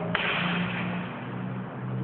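A sudden sharp impact sound, then a noisy decay that echoes in the hall, as a fencer lunges into a strike with a training sword.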